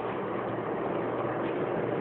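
Steady road noise of a passing vehicle, growing slightly louder.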